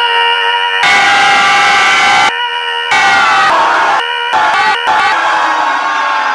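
Young people screaming at the top of their voices: a string of long held screams joined by abrupt cuts, one woman's scream at the start and a group screaming together near the end.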